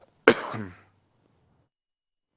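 A person clearing their throat: one abrupt burst about a quarter second in, falling in pitch and over in about half a second.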